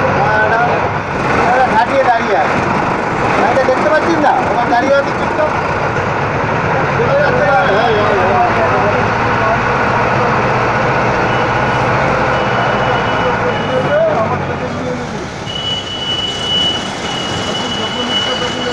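Inside a moving Ashok Leyland Stag minibus: its diesel engine runs with a steady low drone under road and rain noise in city traffic, with voices in the background. A thin high tone joins in for the last few seconds.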